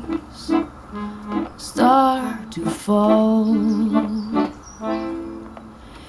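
A slow song playing through a homemade ribbon-tweeter loudspeaker, in a quieter instrumental stretch between sung lines, with held keyboard- or piano-like notes.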